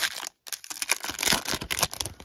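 Shiny foil trading-card pack wrapper crinkling and rustling as it is torn open by hand, a dense run of crackly rustles with a brief pause about a third of a second in.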